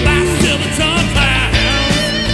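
Rock music: a band with electric guitar, bass and drums playing an instrumental passage, a lead part holding wavering notes over a steady drum beat.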